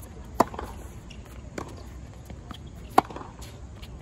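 Tennis racquets striking the ball in a baseline rally: two loud, crisp hits about two and a half seconds apart, one just under half a second in and one about three seconds in, with a fainter hit between them.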